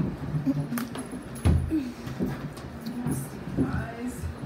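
Close-mic handling noises of cookies being held and eaten at a wooden table: a sharp click under a second in and a heavy thump about a second and a half in, with faint murmured voice sounds in between.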